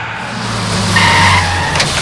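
A bus braking hard and skidding to a stop: the tyres squeal loudly over the engine's low running sound, the squeal strongest about a second in.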